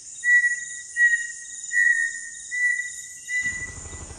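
Insect chirping, like crickets at night: five short chirps, about one every three-quarters of a second, over a steady high hiss.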